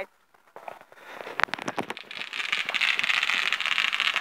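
A firework going off: one sharp crack about a second and a half in, then a dense crackle of many small pops over a hiss that grows steadily louder.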